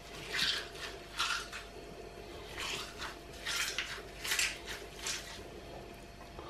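Hands squeezing sliced raw onion to press out its juice: a series of short, wet, crunching squishes, about eight of them at uneven intervals.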